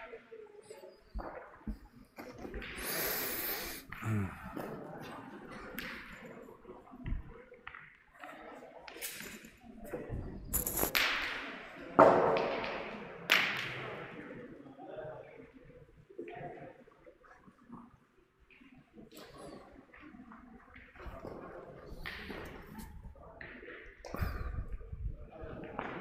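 A few sharp metallic clacks of steel pétanque boules, the loudest about halfway through, over low background talk from players.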